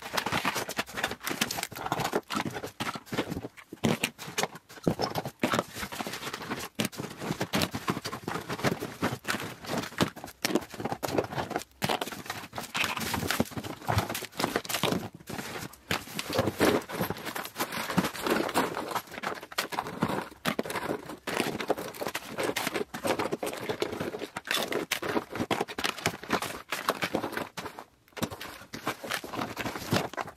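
Makeup products in cardboard boxes, tubes, bottles and plastic packaging clattering and crinkling as they are tipped and handed out of a cardboard box onto a flattened cardboard sheet: a continuous, irregular run of light knocks and rustles.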